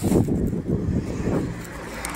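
Uneven low rumble of wind buffeting the microphone of a camera on a moving bicycle.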